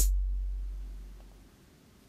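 The last deep bass note of a hip-hop drum-machine beat played back in Roland Zenbeats, ringing out and fading away over about a second and a half as playback stops, then near silence.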